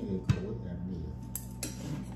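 Tableware clinking on plates at a meal: one sharp clink about a third of a second in, then two lighter clicks near the end, with low voices underneath.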